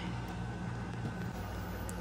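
Steady low hum of room background with no sudden sounds, and a faint thin steady tone above it.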